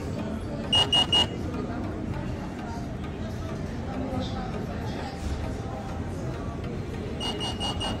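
Restaurant guest pager beeping: three quick high beeps about a second in, then a fast run of repeated beeps starting near the end, the signal that the order is ready for pickup.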